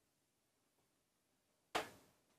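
Near silence in a small room, broken near the end by one short, soft burst of noise.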